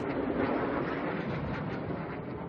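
A steady, rumbling mechanical drone, slowly fading toward the end.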